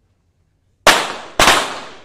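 Two .22 target pistol shots about half a second apart, each trailing off in the echo of an indoor range.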